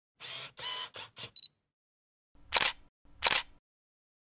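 DSLR camera sound effect: a quick series of short mechanical clicks and whirs, then two loud shutter clicks under a second apart.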